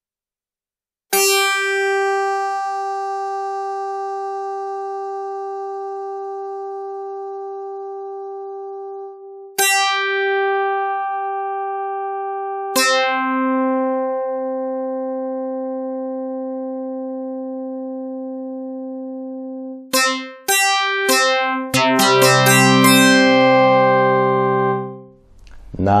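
Yamaha Reface DX four-operator FM synthesizer playing a guitar-like patch. Three long held notes each start rich in harmonics, with the upper ones dying away first and leaving a softer, purer tone, because the modulator envelopes fade faster than the carrier's. Near the end comes a quicker run of notes with lower chords.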